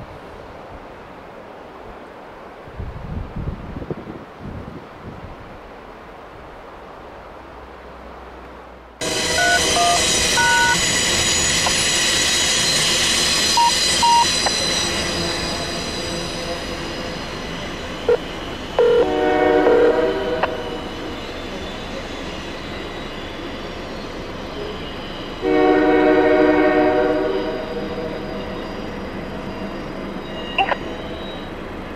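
Wind on the microphone for the first several seconds. Then, from about 9 s in, EMD SD40 diesel locomotives running loud and steady under load, with their Nathan K3L air horn sounded twice: a short toot then a longer blast around 19 s, and another long blast around 26 s.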